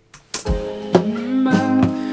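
Acoustic guitar being strummed, with a man's voice singing a long held note over it from about a second in.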